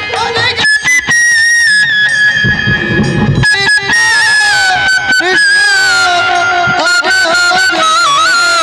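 Naam kirtan instrumental passage: a high melody line held on long notes and stepping slowly down in pitch, over the ensemble's drums with a few sharp strokes.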